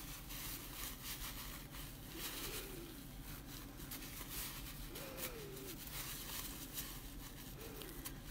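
Faint rustling of a crumpled paper towel as a paintbrush is wiped in it to take off excess paint, in light, irregular scrapes.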